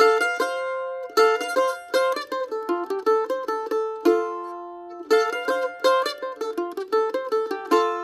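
Solo mandolin picked with a plectrum, playing a run of quick notes that brings out the chord's third. About four seconds in, a note is left ringing and fading, then the phrase is played again.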